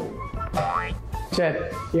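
Background music with an edited-in cartoon sound effect: a quick rising whistle-like glide about halfway through. A short spoken word comes near the end.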